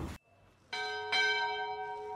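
A bell sound effect struck twice, about half a second apart, each strike ringing with many overtones and fading. It is the notification-bell sound of a subscribe animation.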